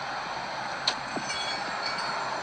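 Steady rushing outdoor background noise, with a single sharp click a little under a second in and a few faint high squeaky tones soon after.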